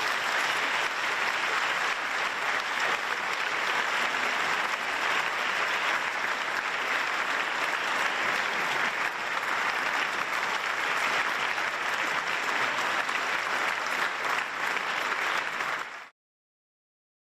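Large seated audience applauding: dense, steady clapping that cuts off suddenly at the end.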